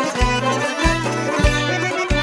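Instrumental introduction of an Azerbaijani song: tar and kamancha playing over a strong low beat that falls about every 0.6 s.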